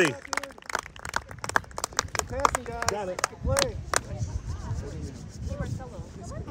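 Faint voices of players and spectators calling out across an open field, with a rapid run of sharp clicks in the first few seconds and a low rumble setting in about halfway through.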